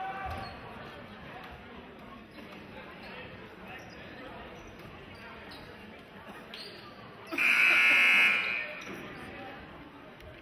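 Gymnasium scoreboard horn sounding one long blast of about a second and a half, signalling the end of a timeout, over the chatter of a crowd in a large hall.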